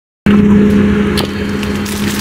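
Steady running noise inside a moving train carriage: a rumble with a low steady hum, starting suddenly about a quarter second in, with a couple of faint clicks.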